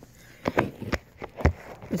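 A few short, sharp puffs and knocks, about half a second apart, from a person breathing through an asthma inhaler spacer.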